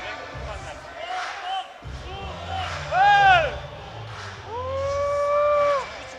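Loud yelling over a low crowd murmur in a fight arena: a short shout that rises and falls about three seconds in, then one long held yell of about a second and a half near the end.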